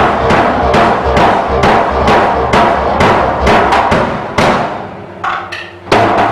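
Drum kit played with a steady beat, a cymbal-washed hit about twice a second; the beat drops away near the end and one loud hit lands at the very close.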